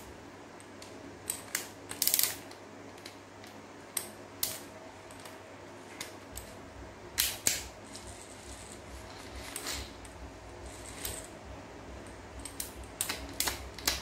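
Ryobi AD60 conventional sea-fishing reel being worked by hand: scattered light mechanical clicks and taps from its crank and levers, with a faint steady whir from about six seconds in as it is turned.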